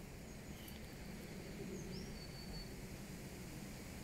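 Quiet outdoor garden ambience: a steady low background rumble, with a faint high bird call about two seconds in.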